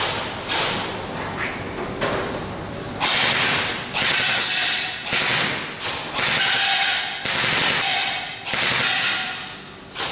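M4-style airsoft rifle firing BBs: two quick shots at the start, then about six short bursts roughly a second apart, each starting sharply and trailing off in the hall's echo.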